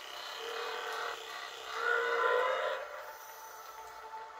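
Animated monster-fight soundtrack playing through a laptop's small speaker: a rushing, noisy blast effect with a wavering growl-like tone, loudest about two seconds in.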